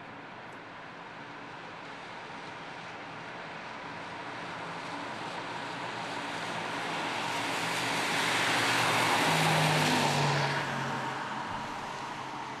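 Audi R8 e-tron electric sports car approaching and passing on a wet road: the hiss of its tyres on the wet asphalt builds steadily, peaks about ten seconds in, then falls away quickly. A low hum underneath is strongest as it goes by.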